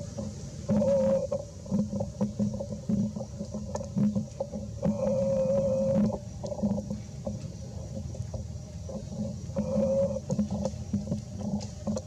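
An animal calling: steady, drawn-out hooting notes repeated every few seconds, the longest lasting about a second, with shorter notes between.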